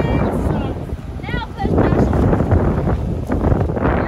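Heavy wind buffeting the microphone, loud and gusting, over the low sound of the Lexus GX460 crawling down a rock ledge. There is a brief vocal sound about a second in.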